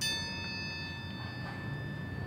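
A bell struck once, a bright ring of several high tones that fades slowly over about two seconds: a single memorial toll after a name is read out.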